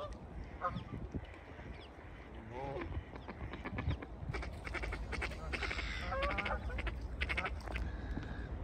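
Geese honking in short calls again and again from a flock of waterfowl, with a run of quick sharp clicks in the second half.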